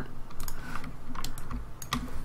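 Computer keyboard keys clicking: a few irregular, scattered taps.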